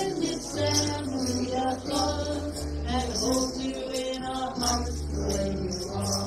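A welcome song sung to a backing of held bass notes and light, high percussion keeping time.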